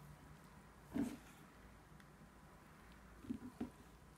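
Mostly quiet, with a few short, soft sounds of a wooden spatula being worked through thick strawberry purée in a plastic food processor bowl: one about a second in and two smaller ones near the end.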